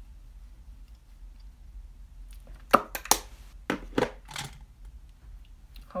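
A quick run of about half a dozen sharp clicks and crackles close to the microphone, as of something being handled, after a couple of seconds of room tone with a low hum.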